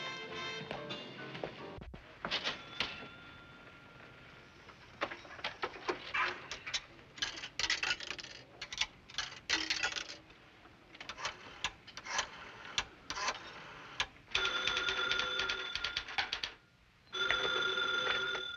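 Clicks of a rotary-dial payphone being dialed, then a desk telephone's bell ringing twice near the end, in two long rings with a short gap between them.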